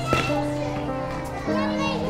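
Background music with steady held notes, over children playing and calling out, their voices rising toward the end.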